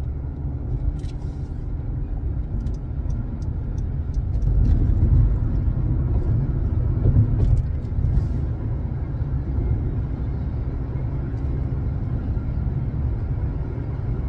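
Steady low rumble of road and engine noise inside a moving car's cabin, swelling a little about four to five seconds in.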